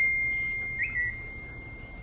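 A single high, pure whistle-like tone that fades slowly over about two seconds, with a brief rising chirp sliding into it about a second in.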